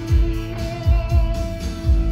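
Live rock band playing an instrumental passage: electric guitar holding a sustained note over bass and a steady low drum beat.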